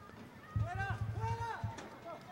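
Distant shouting voices across an open soccer field: several drawn-out calls, rising and falling in pitch, starting about half a second in.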